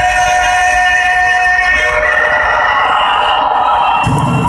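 Loud music: a held chord of steady, sustained tones, with the bass and beat dropped out until they come back at the very end.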